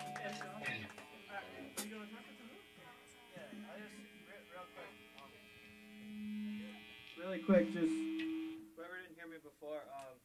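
Between songs: the band's last guitar chord rings out and dies away in the first second, leaving the steady hum of the guitar amplifiers under faint talking in the room. A louder burst comes about two-thirds of the way through, and a man's voice starts near the end.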